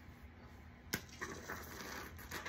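A single sharp click about a second in, then a soft hiss as Great Stuff Gaps & Cracks expanding spray foam starts to come out of the can's straw nozzle.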